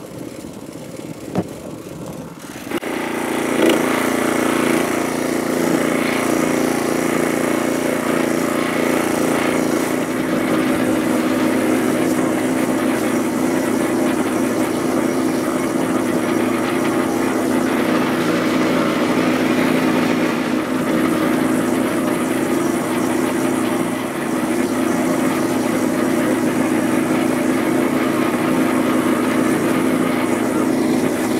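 A few knocks, then about two and a half seconds in the gas engine of a Yardmax YD4103 power wheelbarrow comes in and runs steadily as it drives loaded with bricks and concrete.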